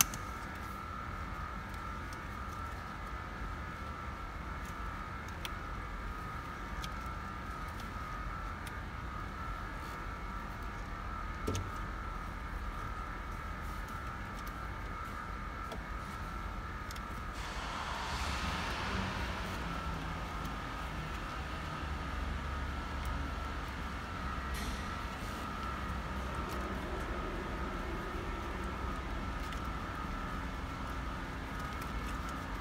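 A steady high-pitched whine runs under hand-handling noises at a car's steering column. There is a single sharp click about eleven seconds in, and a burst of rustling and scraping around eighteen seconds in as the leather steering-column cover is pulled back.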